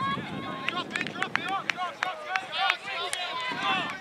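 Voices calling and shouting across an outdoor soccer field during play, too distant to make out words, with several sharp knocks scattered through; one of the sharpest comes about three seconds in.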